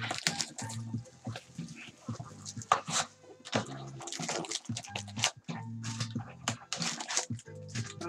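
Foil-wrapped trading card packs rustling and crinkling as they are pulled out of a cardboard hobby box, with background music playing.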